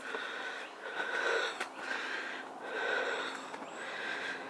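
Heavy, rhythmic breathing close to the microphone, one breath roughly every second, from a person out of breath climbing steep stone steps. A few light taps, like footsteps on stone, fall between the breaths.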